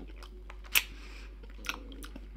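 Mouth chewing salty liquorice candy wheels with the lips closed: a few short wet clicks of the mouth, the clearest two about a second apart.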